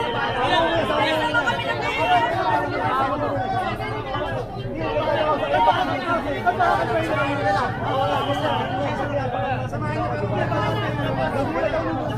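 A crowd of people talking and arguing over one another in many overlapping voices, with a steady low hum beneath.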